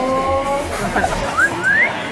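Edited-in TV sound effects over background music: a pitched tone that rises slowly, then two short quick upward swoops near the end.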